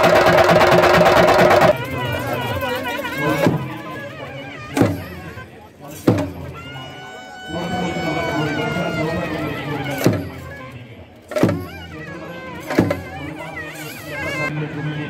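Chenda drums played by an ensemble, loud and dense for the first couple of seconds, then a sudden drop to crowd voices with single sharp drum strikes about every second and a half and a long held note near the middle.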